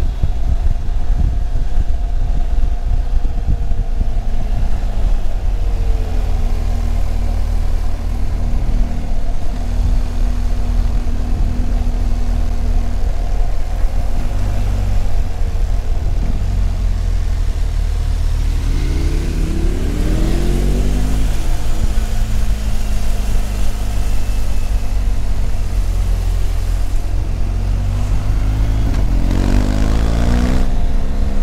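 Large twin-cylinder adventure motorcycle running at road speed, heard from the rider's helmet with heavy wind rush on the microphone. The engine note holds steady, then rises and falls in pitch about two-thirds of the way through and again right at the end.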